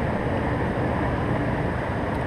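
Artesian Resort hot tub running with its jet pumps and air blower on: a steady churn of water and air bubbles.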